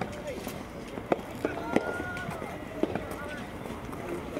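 Three sharp knocks about a second apart, the sound of a soft tennis ball striking the court, with faint voices in the background.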